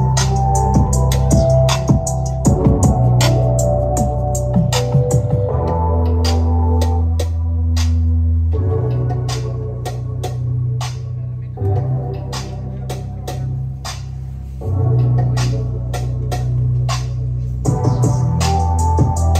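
Electronic music with a heavy bass line and a quick, steady hi-hat beat, played loud through a 2023 Harley-Davidson CVO Road Glide's factory audio system. The music eases off in the middle and comes back up about three seconds before the end.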